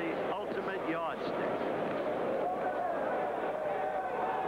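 Arena crowd noise: many spectators shouting and calling out at once over a steady hubbub, the shouts thickest in the first second, with one voice holding a long call near the end.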